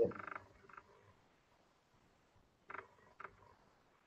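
Mostly quiet video-call audio. A short spoken "yeah" opens it, then two brief faint voice-like sounds come about three seconds in.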